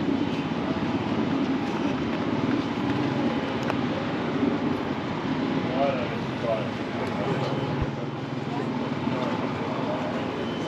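Voices of people talking nearby, a few snatches around the middle, over a steady low drone of vehicle engines.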